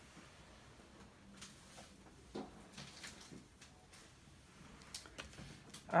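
Quiet room tone with a few faint, scattered clicks and light knocks from someone moving about, picking dropped glitter up off the floor.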